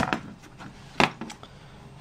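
A single sharp knock about a second in, with a fainter one just after it: a steel-framed Alps 3.5-inch floppy drive being handled and set down on a table.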